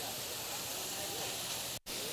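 Seasoned ground beef sizzling steadily in a pan on a high induction burner, with a momentary dropout in the sound near the end.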